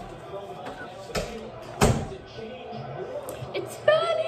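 A pantry door being shut firmly: one sharp slam just before two seconds in.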